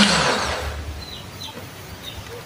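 Electric countertop blender motor switching off and spinning down, its hum dropping in pitch right at the start and the whirring fading away over the next two seconds.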